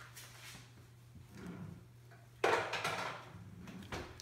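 Quiet kitchen handling while candy apples are dipped: a brief scraping rustle about two and a half seconds in as the pot of hot candy and the apples are moved, over a faint steady low hum.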